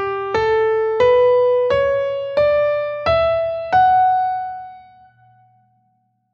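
Piano playing measures 9 and 10 of a melodic dictation: seven single notes climbing step by step at an even, moderate pace, the last note left to ring and fade away.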